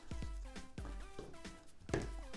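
Background music: a melody of short notes that step from one pitch to the next, fairly quiet.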